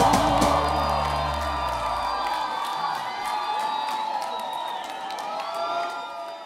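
A live band's song ending: the bass drops out about a second and a half in and the last notes fade while the crowd cheers and whoops.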